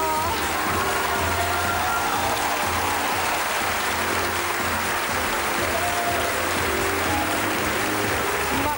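Studio audience applauding steadily over entrance music.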